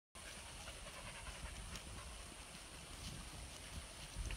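Faint outdoor ambience: uneven low rumble of wind and handling on a phone microphone, under a steady high hiss.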